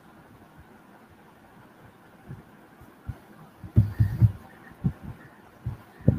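Dead air on a video-call line: faint steady hiss with a few soft, low thumps in the second half, a small cluster of them about two thirds of the way in.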